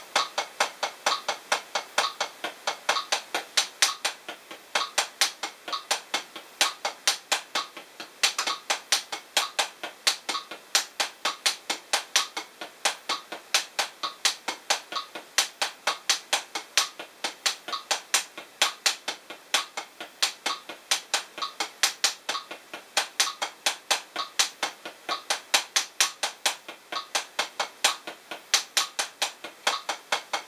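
Hickory 7A drumsticks playing a single stroke roll on a Drumeo P4 practice pad: evenly alternating single strokes as sixteenth notes at 65 bpm, about four sharp taps a second, steady throughout.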